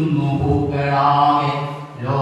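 A man's voice chanting a Malayalam poem in a slow, sung recitation, holding long drawn-out notes.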